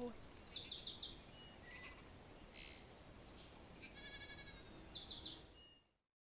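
A songbird singing two short phrases of rapid, high-pitched chirps, each about a second long and about three seconds apart.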